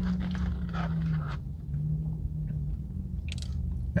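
A man chewing a mouthful of hot dog with his mouth closed, mostly in the first second and a half, over a steady low hum.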